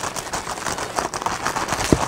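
Scissors cutting open a plastic courier mailer bag, the plastic crinkling in a dense run of small crackles, with one sharper click near the end.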